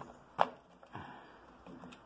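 A sharp click of a metal socket being handled in a plastic socket-set case, followed about half a second later by a few softer clicks as the sockets are sorted through.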